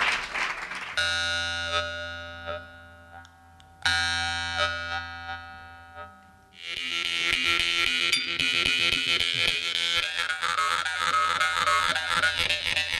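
Jaw harp played into a microphone. Two single plucks, about a second and about four seconds in, each ring out with a buzzing tone and fade. Then from about six and a half seconds it plays on continuously and louder, a dense buzzing tune.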